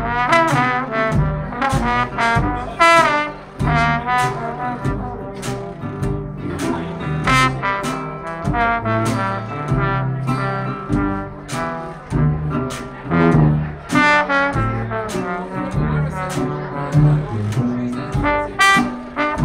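Live traditional New Orleans jazz band playing an instrumental chorus of a blues: trombone, trumpet and clarinet weaving lines over a low bass and a steady drum beat.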